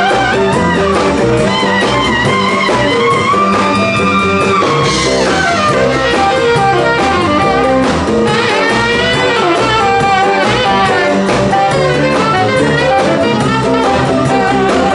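Live blues band with a saxophone solo out front, held notes that bend and swoop in pitch, over electric guitar and drum kit.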